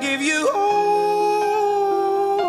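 A song with a singer's voice: a few quick bending notes, then one long held note from about half a second in.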